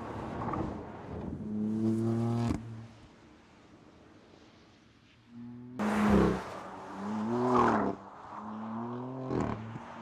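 BMW M4's turbocharged straight-six engine revving hard on track in several bursts, its pitch climbing and dropping with throttle and gear changes, with a quieter lull a few seconds in.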